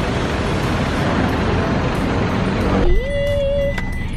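Steady street traffic noise from passing cars, cut off suddenly about three seconds in by a single held note of background music.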